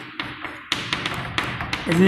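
Chalk on a blackboard as figures are written: a run of sharp, separate taps and short scratches as the chalk strikes and drags across the board.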